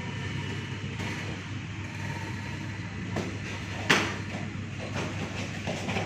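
Steady hum of the gym's wall fans with sparring strikes landing as a few sharp slaps on padded protective gear, the loudest about four seconds in.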